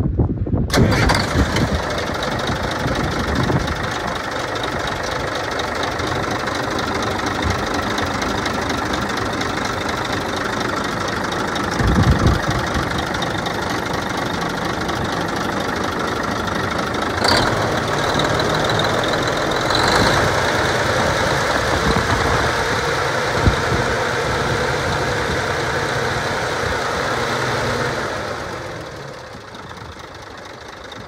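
Heavy truck's diesel engine starting about a second in, then running at a steady idle; the level drops near the end.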